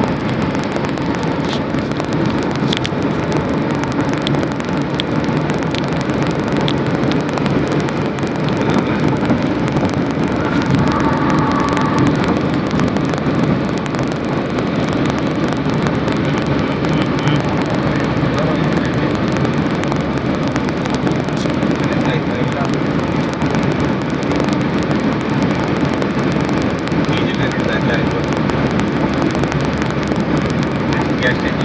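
Steady road and engine noise inside a moving vehicle's cabin at highway speed.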